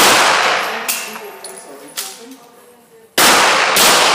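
Handgun shots echoing in an indoor range: one shot, a pause of about three seconds with two faint clinks, then two quick shots near the end.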